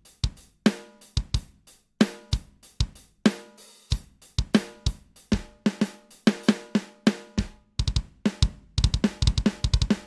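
Sampled drum hits from a PreSonus Impact XT software kit, kick and snare struck one at a time from the pads while the snare's tuning is being raised. The hits come roughly two to three a second, bunching into quicker runs near the end.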